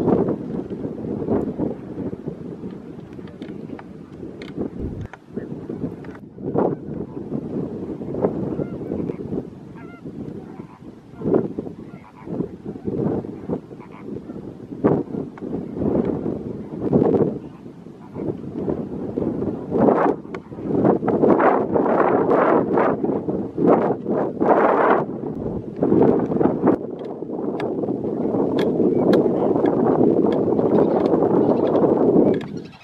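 A flock of greater flamingos calling, with many short overlapping calls that grow busier and louder in the second half.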